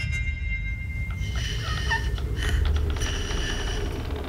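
Horror-film sound design: a steady low rumbling drone, joined from about a second in by rasping, hissing, breath-like sounds with a few short squeaky glides.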